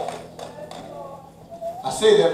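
A short pause in a man's preaching: low room sound in a hall with faint voice traces, before loud speech resumes at the very end.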